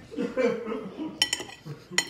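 A fork clinking and scraping against a dinner plate while food is picked up, with a few sharp clinks about a second in and a louder one near the end.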